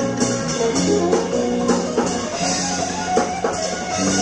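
Live jazz-fusion trio playing: sustained electric guitar lines over electric bass and drums with steady cymbal wash, heard through an audience recording.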